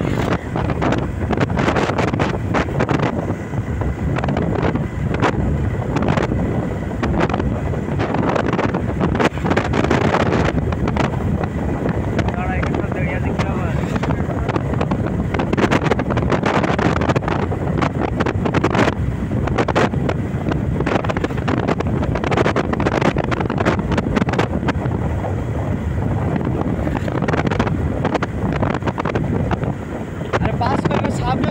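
Wind buffeting the microphone of a moving motorcycle, a loud, steady rush with irregular gusty thumps, over the motorcycle's engine and road noise.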